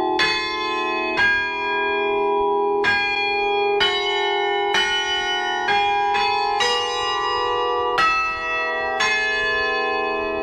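Church bells pealing, a new bell struck about once a second at a changing pitch, each tone ringing on and overlapping the next.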